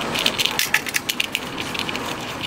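Spool-holder cap and wing nut being turned by hand onto a welder's wire-spool spindle and tightened down to set drag on the wire spool: a continuous run of small clicks and rattles.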